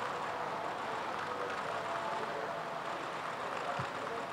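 Steady background noise, a low even rumble and hiss, with faint snatches of distant voices.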